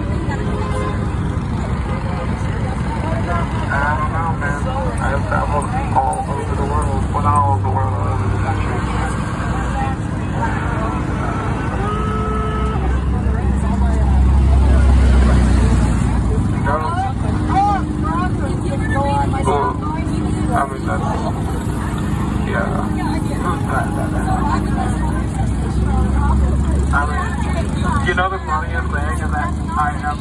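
Several people talking over one another on a street, over a low engine rumble from vehicles that swells twice, around the middle and again near the end.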